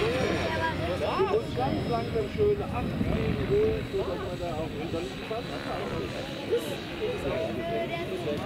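Background chatter of several people talking, over a faint steady high whine from a small electric RC helicopter, a T-Rex 450, flying far off.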